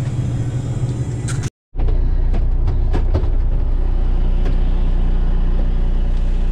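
Vehicle engine running, heard from inside the cab as a steady low rumble. It cuts off abruptly about one and a half seconds in, then a steadier, lower engine hum from inside a vehicle cab runs on, with a few faint clicks.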